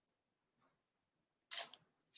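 Near silence, then a brief soft rustle about one and a half seconds in.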